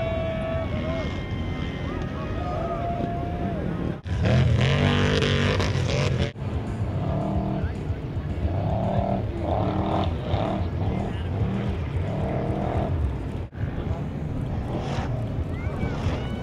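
Off-road race truck engines revving in repeated bursts, pitch rising and falling, over crowd noise. The sound breaks off sharply a few times where clips are joined, with the loudest run of revving about four seconds in.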